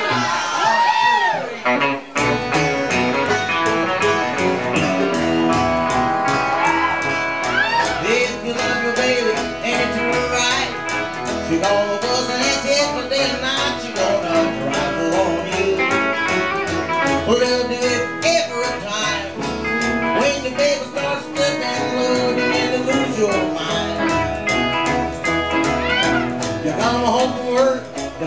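Live country band playing: after a short lead-in, the full band with upright bass comes in about two seconds in with a steady beat.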